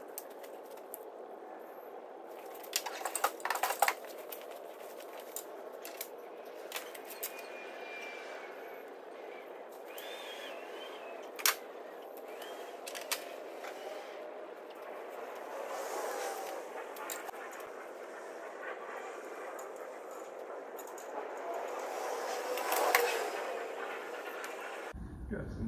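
Hands handling small plastic parts and cables on a clay target thrower: scattered clicks and rustling, with a quick flurry of clicks about three seconds in, a single sharp click near the middle, and louder rustling near the end.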